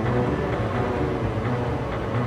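Instrumental music between sung lines: held notes and chords over a steady low bass, with no vocals.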